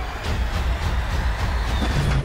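Loud, dense trailer sound mix: a deep bass rumble under a continuous roar of noise, with occasional sharp hits.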